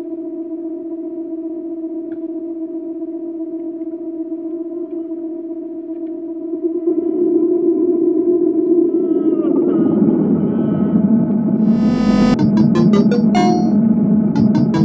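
Synthesized horror-logo soundtrack: a steady, sustained synth drone that swells louder after about seven seconds, with a falling glide near ten seconds. About twelve seconds in, a brief burst of noise gives way to a rapid, stuttering series of sharp electronic hits.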